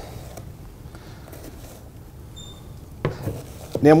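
Quiet kitchen handling at a cooktop and cutting board: a few faint clicks and taps over low room noise, with one sharper knock about three seconds in.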